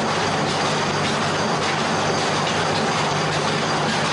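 Loud, steady machine noise: a low motor hum under an even rushing hiss, from equipment in a plant tissue-culture room.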